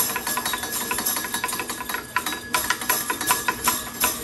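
Devil's fiddle (Teufelsgeige, stumpf fiddle) being played with a stick: a rapid, uneven clatter of strikes on the pole, with its bells jingling and small splash cymbal ringing underneath.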